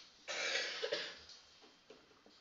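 A person coughs once, a short rough burst about a quarter second in that lasts under a second. Faint felt-tip marker strokes on paper follow as digits are written.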